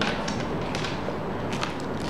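Light handling noises: a few soft clicks and rustles as a zippered solar charger case is opened out and a small plastic bag of adapters is picked up.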